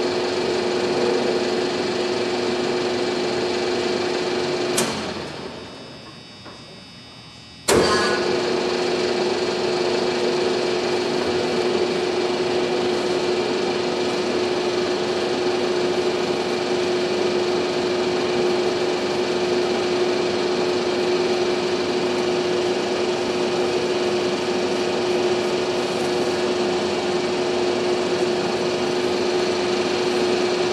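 Oster Model 784 pipe and bolt threader running, its 5 hp motor and gear drive giving a steady hum with one strong even tone. About five seconds in it clicks off and winds down, and about three seconds later it clicks back on and runs steadily again.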